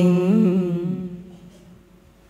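Women's Quan họ folk singing, unaccompanied: the last syllable of a phrase is held on a wavering, ornamented note and fades out about a second in.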